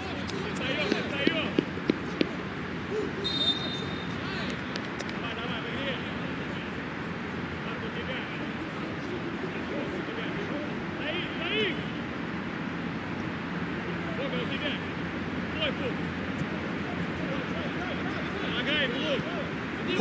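Pitch-side sound of a football match with no crowd noise to speak of: players shouting to each other over a steady background hiss, with a few sharp knocks in the first couple of seconds, typical of the ball being kicked.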